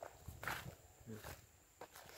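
A few faint footsteps on dry, grassy ground.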